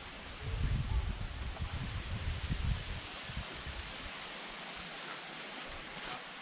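Steady hiss of flowing water from a shallow stream and waterfall, with low wind rumble on the microphone for the first few seconds.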